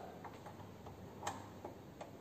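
Faint, scattered light clicks and taps of connecting leads and their plugs being handled at a lab bench, about half a dozen, the clearest just over a second in.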